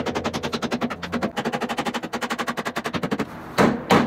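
Hammer tapping a wood block to drive a snowmobile slider onto the skid rail: a fast, even run of sharp taps, about a dozen a second, then two heavier knocks near the end.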